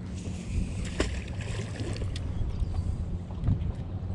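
A boat motor running steadily, a low hum, with wind on the microphone and a sharp click about a second in.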